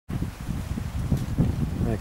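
Wind buffeting the microphone outdoors: an uneven, fluttering low rumble.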